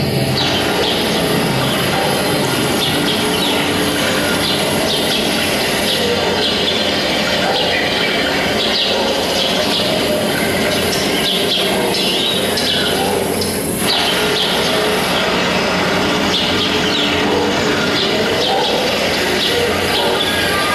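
A loud, continuous mass of many short bird-like chirps and calls, as from a large flock, sounding throughout as part of a contemporary concert piece about flamingos.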